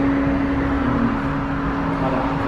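Key Master arcade machine's platform motor running with a steady, even hum as the key platform rises up its track, over general arcade noise.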